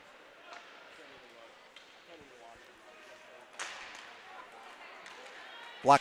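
Ice hockey rink sound during play: a low hiss of skating and crowd with a few faint clicks of sticks and puck, faint distant voices, and a sudden louder burst of noise about three and a half seconds in that slowly fades.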